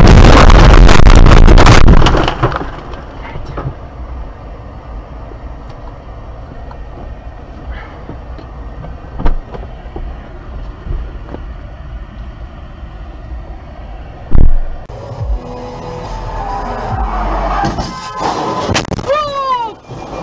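A car crashing off the road and rolling through tall grass and bushes: a loud rushing, scraping noise for about two seconds, then a much quieter stretch broken by two sharp knocks.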